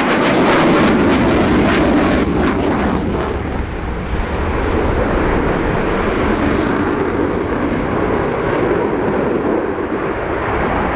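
Loud jet noise from the Swiss F/A-18C Hornet's twin General Electric F404 turbofans during a display manoeuvre. The first three seconds have a rough, crackling top, which then fades and leaves a duller, steady rush.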